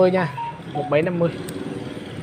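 Speech: a man's voice repeating a short syllable, heard as "ba", again and again.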